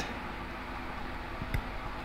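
A single faint snip of small scissors cutting the tag end of fluorocarbon hook link line, about one and a half seconds in, over a steady low hiss.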